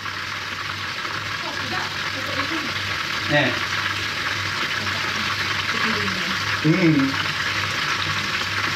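Hot oil sizzling steadily in a wok as coated red tilapia deep-fries. A faint voice is heard briefly in the middle and again near the end.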